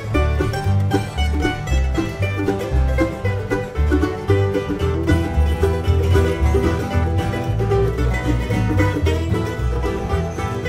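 An acoustic bluegrass string band playing a lively tune: quick plucked-string picking over a bass that pulses steadily.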